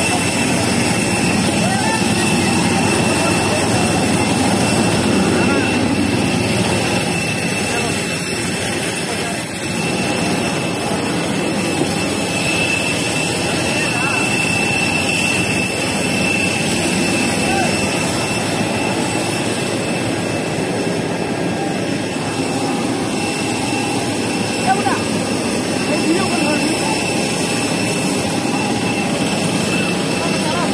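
Jet aircraft noise on the airport apron: a loud, even rush with several steady high-pitched whining tones over it.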